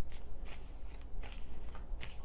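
A deck of tarot cards being shuffled by hand: a run of soft, irregular card clicks and slaps, several a second, while cards are mixed before drawing clarifiers.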